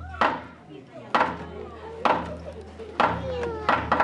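Lion dance percussion, drum with cymbals, playing slow single strikes about once a second, each ringing on before the next.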